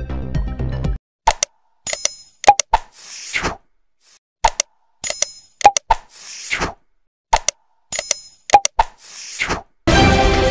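Background music cuts off about a second in, followed by subscribe-button animation sound effects: quick clicks, a bell-like ding and a pop, then a whoosh, the set repeated three times about every three seconds. New music starts at the very end.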